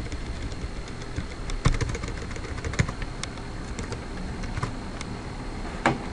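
Scattered, irregular clicks typical of computer keyboard keys and a mouse, over a steady background hum with a faint high whine.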